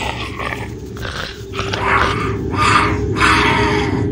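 Growling and grunting: about four rough bursts, a second apart and growing louder, over a steady low drone.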